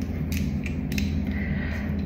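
Small plastic screw-top jar of NYX eyeshadow base being handled and twisted open: a few short clicks and creaks in the first second, over a steady low hum.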